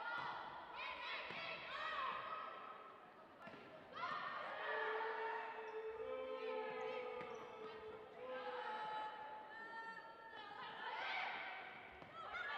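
Volleyball rally: players' and spectators' voices calling and shouting throughout, with sharp ball contacts now and then.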